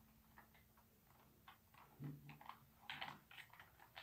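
Quiet room with faint scattered clicks and light taps of handling, a little busier about three seconds in, and a brief low hum about two seconds in.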